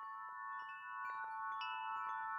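Background music fading in: short struck, ringing notes over several held tones, growing steadily louder.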